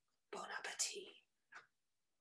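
A woman whispering a short phrase, with a brief soft sound near the end.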